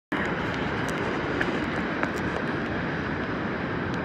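Steady rush of ocean surf and wind on an open beach.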